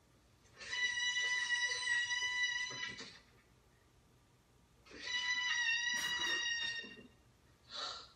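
A high, steady electronic tone sounds twice, each time held for about two seconds with a pause of about two seconds between, from the television episode's soundtrack.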